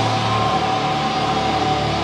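Rock band playing live: a sustained wash of amplified, distorted noise with a steady held high tone over it and no drumbeat. A low held note drops out about half a second in.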